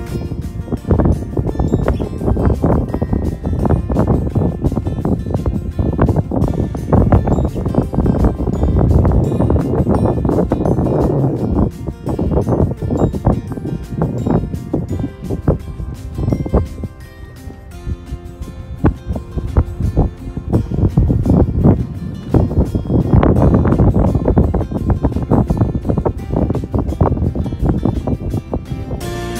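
Wind buffeting a phone microphone in uneven, loud gusts, easing briefly about two-thirds of the way through.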